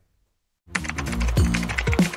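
Silence, then about two-thirds of a second in, music starts together with a rapid run of keyboard or typewriter-style key clicks: a typing sound effect as on-screen text is typed out.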